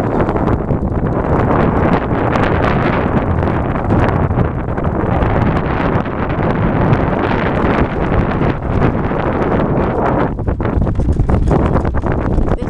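Wind buffeting the microphone of a hand-held camera riding on a moving electric scooter: a loud, steady rush of noise.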